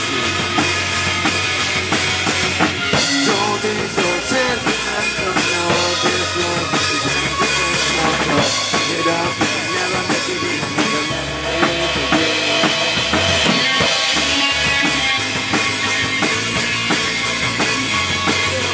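Live rock band playing: a drum kit with kick and snare driving the beat under electric guitars, bass and keyboard.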